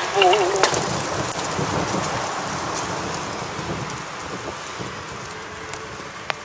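A man's sung note tails off in the first second, then a broad rushing noise fills the pause and fades slowly, with a few faint clicks near the end.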